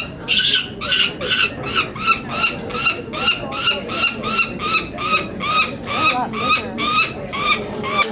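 Peregrine falcon chick (downy eyas) calling over and over while being handled for banding, a steady run of about two to three calls a second.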